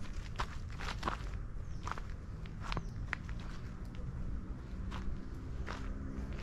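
Footsteps: a few irregular steps, roughly one a second, over a low steady rumble.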